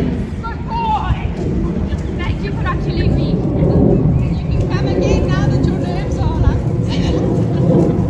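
Wind buffeting an outdoor phone microphone, a steady low rush, with a faint distant voice calling now and then.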